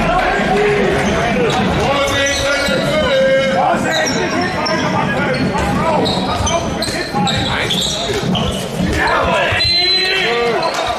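Handball bouncing on a sports-hall floor, with sneakers squeaking on the court and players calling out, in an echoing hall.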